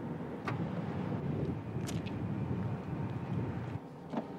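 Steady low outdoor rumble of open-air background noise, with two short sharp clicks, about half a second and about two seconds in.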